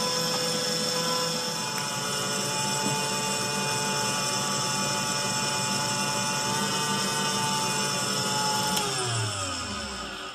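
Electric stand mixer running at high speed, its wire whisk beating eggs, a steady motor whine. About nine seconds in it is switched off and the whine falls in pitch and fades as the motor winds down.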